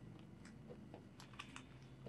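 Faint crisp paper rustles and light clicks of a thick stack of Philippine peso banknotes being handled and squared between the hands, with a few sharp ticks in the second half.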